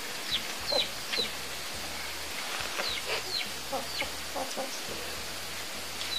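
Chickens clucking, with short high falling calls repeating irregularly over a steady hiss.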